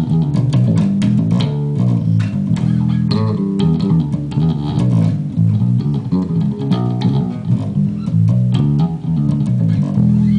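Music Man StingRay electric bass with active electronics, played through an Ampeg SVT amp and 8x10 cabinet: a busy, continuous line of quick plucked notes.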